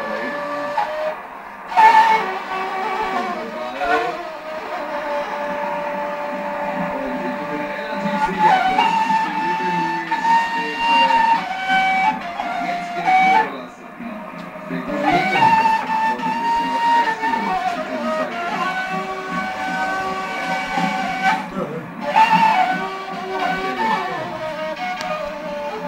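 A long end-blown flute playing a slow melody of long held notes, with short breath pauses about a second in, near the middle and near the end.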